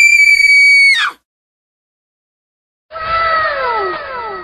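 A loud, high-pitched scream held at one pitch for about a second, dropping off at the end. After a short silence, a pitched sound sliding down in pitch begins near the end, repeating over itself like an echo.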